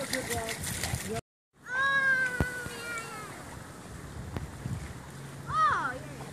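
A long, high-pitched voice call, held for over a second and slowly falling in pitch, follows a brief total dropout of the sound; a shorter rising-and-falling call comes near the end over a low steady hum.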